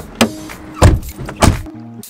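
Car door handle clicking as it is pulled, then two heavy thumps of car doors shutting, about half a second apart. Background music plays underneath.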